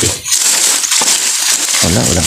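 Dry leaf litter, twigs and grass stems crackling and rustling as a hand sweeps through them on the forest floor. There is a brief voice near the end.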